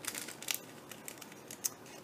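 Small plastic packet crinkling faintly as it is handled in the fingers, with a few short crackles.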